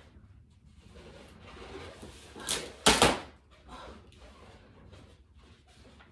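Handling noises as a balloon is pressed and stuck up onto a wall backdrop, with a short sharp burst about halfway through and right after it a louder double burst, the loudest moment.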